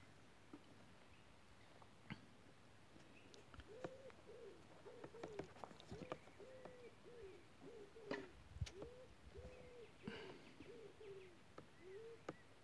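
Faint bird calls: a quick series of short, low hooting notes, each rising and falling in pitch, about two a second, starting a few seconds in. A few light clicks and one sharper knock are heard among them.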